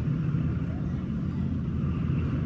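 Steady low rumble of background road traffic.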